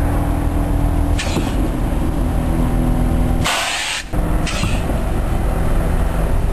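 Honda Civic's engine running steadily while its air suspension hisses in bursts as the bags are aired up or let down: a short hiss about a second in, a longer, louder one about three and a half seconds in, and another short one just after.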